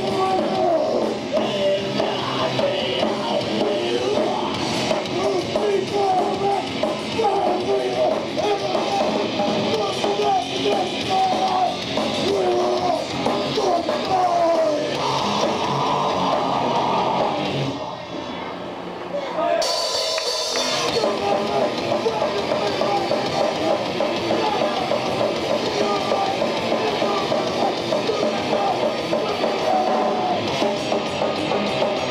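Live heavy metal band playing loudly: a continuous wall of drum kit and amplified instruments. About eighteen seconds in the sound thins for a moment, then a cymbal-like crash brings the full band back in.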